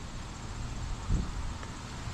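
Quiet outdoor background: a steady low rumble with faint high insect chirping, and one small soft sound just over a second in.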